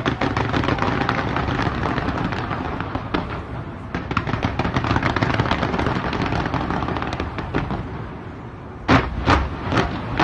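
Fireworks fired in rapid succession from the sides of a skyscraper: a dense, continuous barrage of cracks and bangs, with several louder separate bangs near the end.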